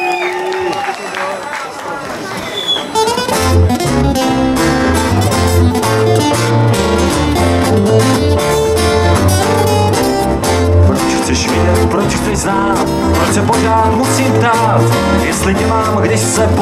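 A voice and the crowd first. About three seconds in, a small acoustic band starts playing: strummed acoustic guitars over a steady rhythm and deep bass notes.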